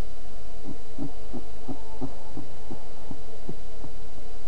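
A steady low hum with a run of soft, evenly spaced low thuds, about three a second, starting about a second in and lasting to near the end.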